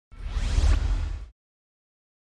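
A whoosh sound effect for a logo intro, with a deep low rumble under a rising sweep, lasting a little over a second and then cutting off.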